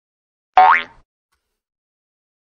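A short cartoon-style sound effect: one pitched tone that glides quickly upward, lasting under half a second, about half a second in.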